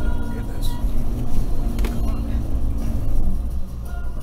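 Toyota Prado KDJ150's turbo-diesel engine running under load in low range through soft sand, heard from inside the cabin as a steady low rumble, with a couple of knocks about half a second and two seconds in.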